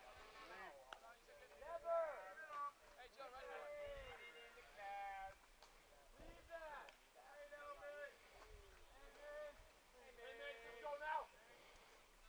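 Faint, distant voices talking and calling out in short phrases, with brief pauses between them.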